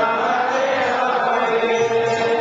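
A group of voices chanting together in a devotional kirtan, the melody settling into a long held note in the second half.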